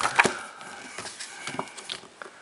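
A glossy booklet page being turned by hand: a sharp crackling flap of stiff paper at the start, followed by a few light clicks and rustles as the page settles.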